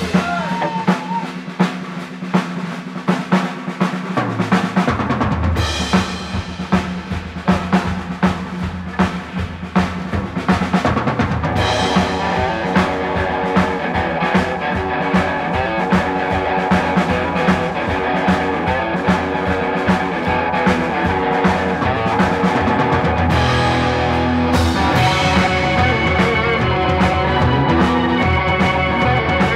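Live rock band playing: drum kit and electric guitar, with the bass coming in about five seconds in and the sound growing fuller toward the end.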